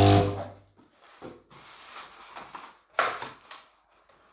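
Electric balloon inflator running on its timer for about half a second at the start as a 5-inch latex balloon fills, with a steady motor hum that then stops. Soft rubbing and squeaks of latex follow as the balloon neck is handled and tied, with a sharper squeak about three seconds in.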